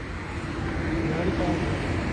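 Low steady rumble of a vehicle, with a faint, muffled voice murmuring from inside the car.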